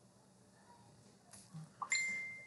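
Quiet room tone, then a few faint clicks and knocks in the second half. Just before the end comes a sharp click and a short, steady, high-pitched electronic beep.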